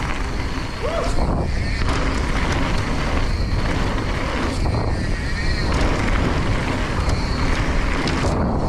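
Mountain bike rolling fast down a loose gravel trail: tyres crunching over the gravel and the bike rattling, with wind rushing over the microphone as a steady low rumble.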